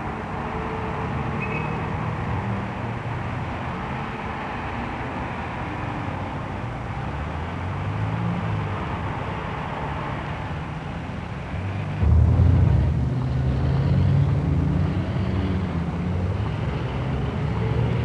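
City street traffic: car engines running and passing over a steady hum of the street. It gets louder about twelve seconds in, when a deeper engine rumble comes in.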